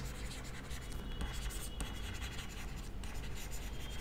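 Stylus writing on a tablet screen: light, irregular scratching and ticking as handwritten words are formed.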